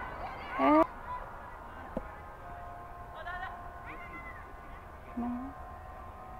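Gulls calling over an open field: a series of short wavering cries, the loudest about half a second in and a few more later. A single sharp knock comes about two seconds in.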